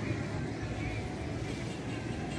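Steady, low outdoor background noise with faint voices in it.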